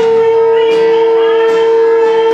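Live worship music: strummed acoustic guitar and singing over a loud, steady, high held tone that does not change pitch.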